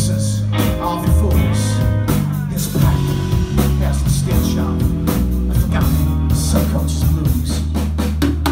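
Live rock band playing an instrumental passage without singing: electric bass guitar holding long, loud low notes under electric guitar and a drum kit with cymbals.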